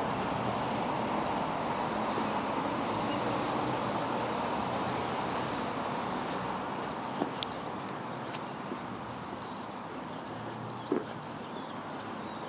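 Steady outdoor background noise of distant road traffic, slowly fading, with a couple of faint clicks in the second half.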